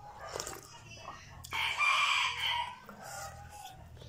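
A rooster crowing once, about a second and a half in, lasting about a second, the loudest sound here. Before it, a soft sip of soup from a spoon.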